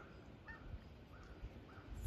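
Near silence: quiet outdoor background with a few faint, very short chirps.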